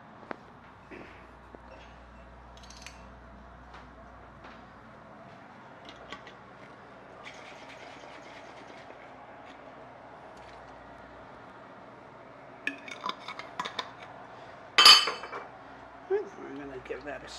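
Metal kitchen utensils clinking and clattering, mostly faint scattered clicks at first. Near the end comes a quick run of small clinks, then one sharp, ringing metallic clank.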